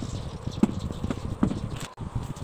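Hands pressing and patting pizza dough on a wooden board: a few soft, irregular thuds over a steady hiss.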